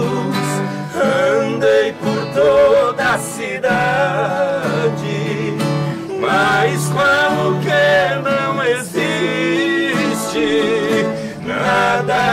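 Two men singing a slow Brazilian sertanejo song in duet over a strummed nylon-string acoustic guitar, the voices in long phrases with strong vibrato and short guitar-filled gaps between them.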